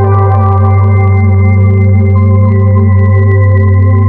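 Background music of sustained organ-like keyboard chords over a steady low bass note, with the chord shifting about three seconds in.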